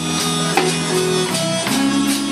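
Live zydeco band playing a slow song: accordion holding chords over guitar and drum beats.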